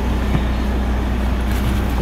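A car engine idling: a steady low hum, with one light click about a third of a second in.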